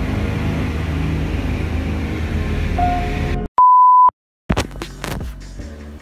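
Steady low drone of a light aircraft's engine heard inside the cabin, under background music. About three and a half seconds in, the sound cuts out around a single loud, high, steady beep lasting about half a second, followed by a few sharp clicks.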